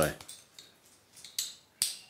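A 3D-printed hinged plastic cable organizer clip snapping shut. There are two sharp plastic clicks about half a second apart near the end, and the second is louder.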